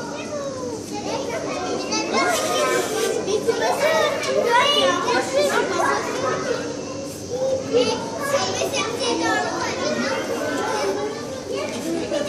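Several children's voices talking and calling out over one another, with no break in the chatter.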